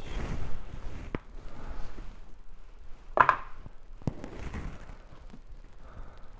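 Kitchen handling noises while raw beef liver is prepared: a low rustling, with a few separate knocks and thuds on the counter, the loudest about three seconds in.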